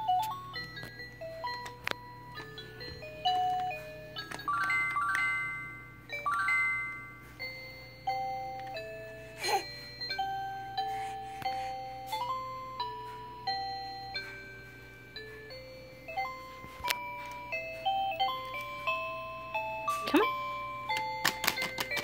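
Electronic musical toy playing a simple tune of short, clean beeping notes that step up and down without a break.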